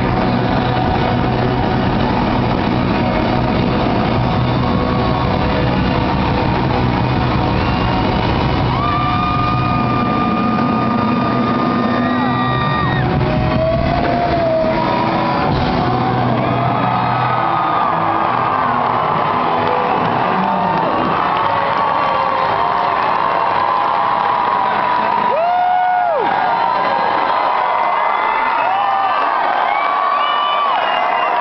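Live rock band playing loudly, heard from within the audience, with the band's sound thinning out about halfway through. Crowd cheering, whooping and shouting rises over it and carries on.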